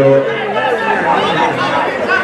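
Several voices shouting and calling over one another, with crowd chatter, at an amateur football match; a long held shout ends shortly after the start.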